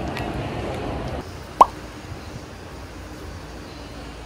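A single short, loud pop that slides quickly upward in pitch, about a second and a half in. Before it, busy mall background chatter cuts off suddenly to quieter ambience about a second in.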